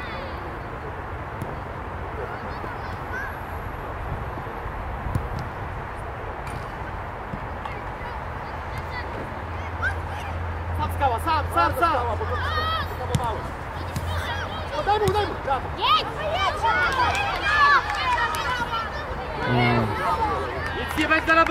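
Steady outdoor background noise. From about halfway in come repeated short shouts and calls from youth football players and coaches, rising in loudness toward the end.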